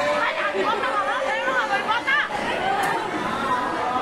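Indistinct chatter of a group of students, many voices talking over one another.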